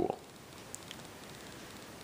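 Faint, steady room tone with a light hiss and no distinct sound.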